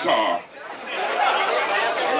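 Audience chatter: several voices talking over one another, after a short voice at the very start and a brief lull.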